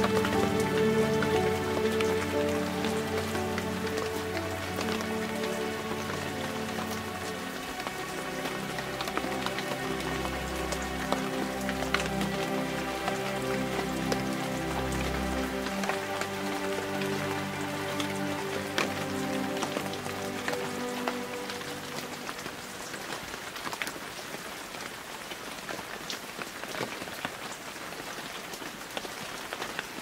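Slow ambient meditation music of long held chords, with a deep bass note in the middle, over steady rain with many small drops; the music fades out about two-thirds of the way through, leaving only the rain.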